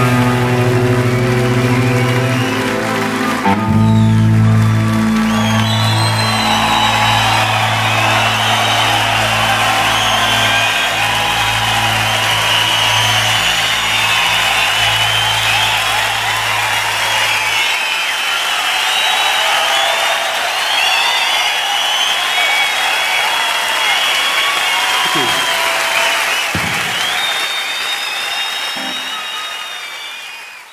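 A live rock band's closing chord, with electric guitar, bass and keyboards held and ringing, while a large audience cheers, whistles and applauds over it. About halfway through, the band's sustained low chord cuts off, leaving the crowd applauding and cheering, which fades at the very end.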